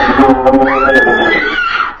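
A young woman screaming over loud, dramatic horror music, one scream rising in pitch from about two-thirds of a second in; all of it cuts off suddenly at the end.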